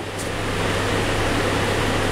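Steady room noise: an even hiss over a low, steady hum, typical of air conditioning or fan noise in a small room.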